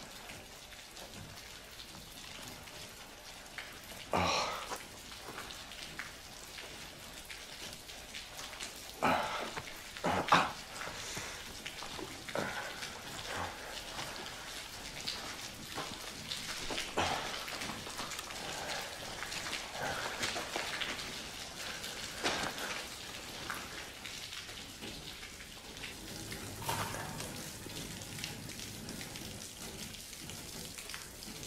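Steady rain, with a few short, sharp sounds over it, the loudest about 4 and 10 seconds in.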